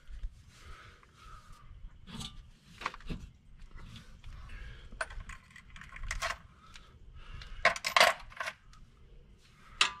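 Steel sockets and hand tools clinking and clattering against each other and the concrete floor as they are handled, a scatter of short metallic clinks with the loudest cluster about eight seconds in.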